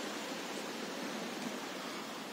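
Steady outdoor background hiss, even and unbroken, with no distinct events.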